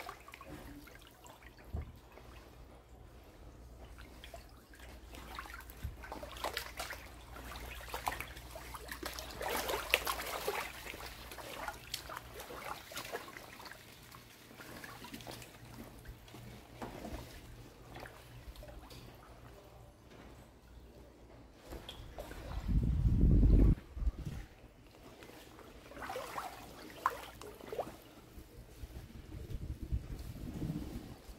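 Floodwater sloshing and trickling around someone wading slowly through waist-deep water, with faint irregular splashes. About three-quarters of the way through comes a brief low rumble, the loudest sound of the stretch.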